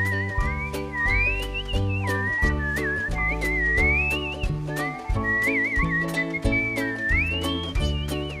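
A whistled melody with a wavering vibrato, played over ukulele strumming, low bass notes and a steady beat of about two strokes a second.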